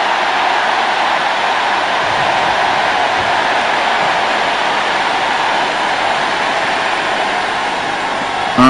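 A huge congregation cheering and shouting as one, a steady wall of crowd noise that eases slightly near the end: jubilant response to the declaration "your siege is over".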